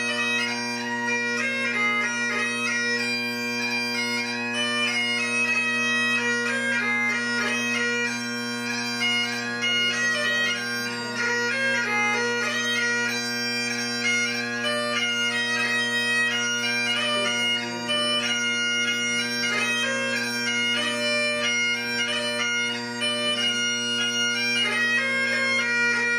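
Highland bagpipe music for a Scottish solo dance: a steady drone under a quick, stepping chanter melody, playing without a break.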